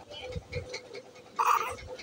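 A baby's short, breathy vocal sound, one brief burst about one and a half seconds in, with a few soft handling thumps before it.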